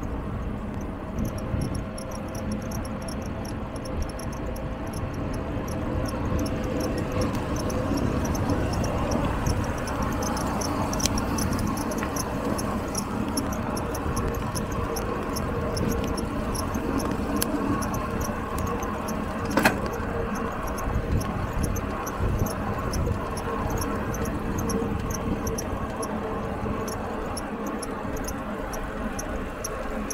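Wind rushing over the microphone and tyres rolling on asphalt while riding a mountain bike at speed, with a rapid, high-pitched pulsing throughout and a sharp click near the two-thirds mark.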